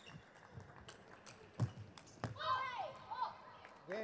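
Table tennis rally: the ball clicking off bats and table in quick succession, with two louder hits about a second and a half and two seconds in. A player shouts just after the point ends.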